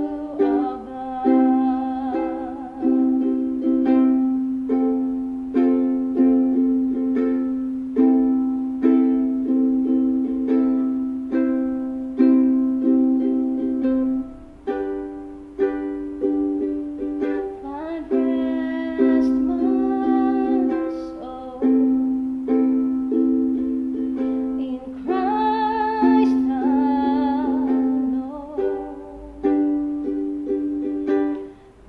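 Ukulele strummed steadily, accompanying a woman singing a slow worship song; her voice is heard near the start, again around two-thirds of the way through and near the end.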